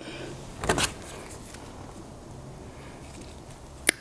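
Brief handling rustle of a small plastic Loctite tube being opened, then a single sharp snip near the end as side cutters cut off the tube's tip, over a faint low hum.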